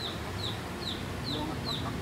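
Feral hen clucking softly. A short high chirp repeats about two or three times a second behind it.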